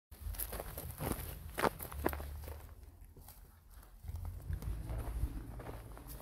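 Footsteps on a dirt and grass footpath: irregular soft steps of people walking.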